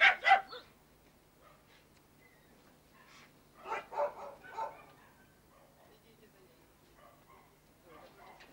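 A dog barking: two loud barks right at the start, then a quick run of about four more around four seconds in.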